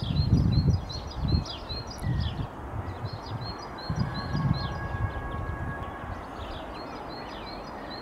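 A small songbird repeating a phrase of about six quick, high chirps three times, at the start, in the middle and near the end. Low, irregular rumbles from wind on the microphone run through the first five seconds.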